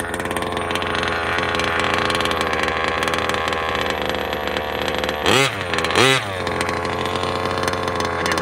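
Small two-stroke gas engine of a Losi DBXL 2.0 1/5-scale RC buggy running at a steady mid speed as the buggy drives on dirt. Two quick revs rise and fall about five and six seconds in.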